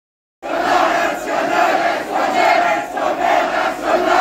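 Concert crowd shouting and cheering loudly, the din rising and falling. It cuts in abruptly about half a second in.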